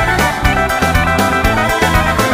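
Instrumental passage of a Mizrahi pop song, with no vocals: a steady drum beat under sustained melodic instruments.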